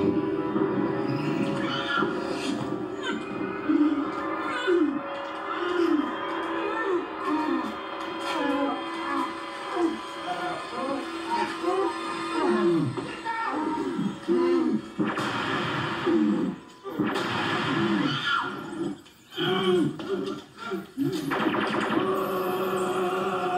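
Television drama soundtrack played through a TV speaker: incidental music with sustained tones under the cries and grunts of people struggling, without clear words.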